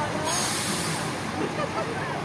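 A short hiss of released air from an open-top double-decker bus's air brakes, lasting under a second, over the bus's steady low rumble.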